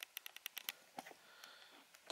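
A run of faint, quick light clicks and ticks through the first second, then near silence.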